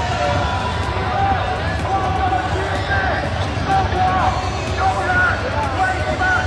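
Football stadium crowd noise: a steady rumble of many voices, with scattered shouts and calls rising over it.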